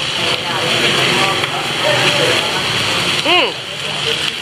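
Steady hissing din of a busy restaurant with voices chattering underneath, and one short rising-and-falling vocal exclamation near the end.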